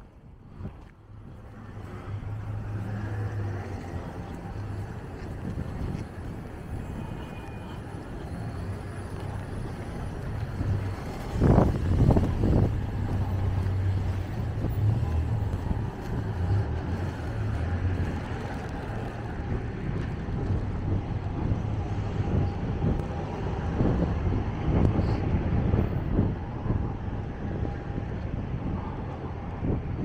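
Road traffic on a city street: cars driving past with a steady low rumble, which swells to its loudest about twelve seconds in.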